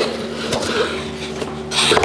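A cardboard presentation box is being opened by hand, its lid lifted free with a short sliding rub of cardboard near the end. A steady low hum runs underneath.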